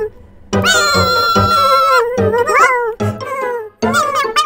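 A cartoon puppy character's high-pitched whining vocalization, wordless: one long held whine starting about half a second in, then shorter wavering, gliding whines. Children's background music with a steady beat plays underneath.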